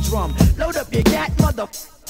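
A 1990s boom-bap hip hop track: a rapper's voice over a drum beat. The deep bass line drops out about half a second in, and the music falls away briefly just before the end.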